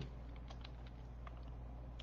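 A few faint, irregular clicks of typing on a computer keyboard, over a steady low electrical hum.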